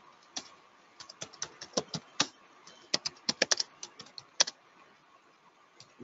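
Typing on a computer keyboard: irregular key clicks in quick runs, stopping about a second and a half before the end.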